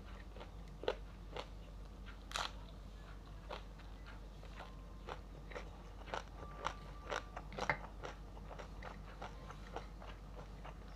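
A person eating close to the microphone: irregular crisp crunches and bites of crunchy food being chewed, one sharper crunch about two seconds in and another near the end.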